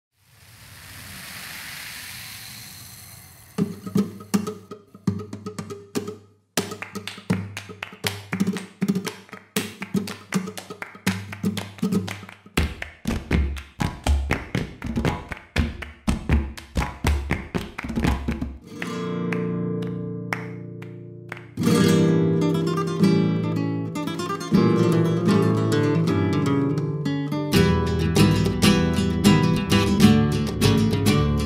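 Flamenco-style music on acoustic guitar. After a soft swell, quick rhythmic strummed and plucked guitar comes in. Bass notes join about twelve seconds in, and a fuller arrangement builds from about twenty seconds.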